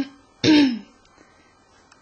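A person clearing their throat: a short first sound, then a louder one about half a second later, falling in pitch.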